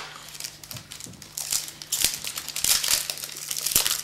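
Foil trading-card pack wrapper crinkling as it is torn open and the cards are slid out, in irregular crackly bursts that grow busier in the second half.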